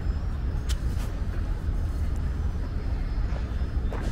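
Outdoor city background noise: a steady low rumble, like distant road traffic, with a couple of faint clicks about a second in.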